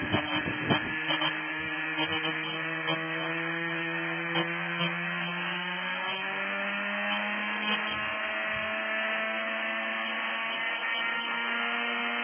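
Small radio-controlled model helicopter's motor and rotor running on the ground, a steady hum whose pitch rises slowly as the rotor spools up. A few gusts of wind on the microphone in the first second.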